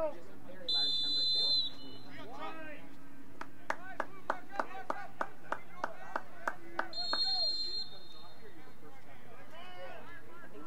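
A referee's whistle blows twice, each blast about a second long, once about a second in and again about seven seconds in. Between the blasts comes an even run of hand claps, about three a second, over distant shouting voices.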